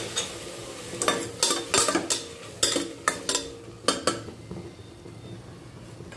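A spoon stirring chopped onions, tomatoes and cashews frying in butter in a metal pressure cooker. A quick string of clinks and scrapes against the pot runs through the first four seconds over a soft sizzle, and the sizzle then goes on alone.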